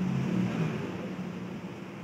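A low, steady motor hum, a little louder in the first second.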